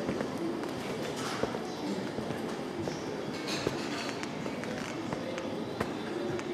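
Footsteps and scattered irregular knocks over room noise.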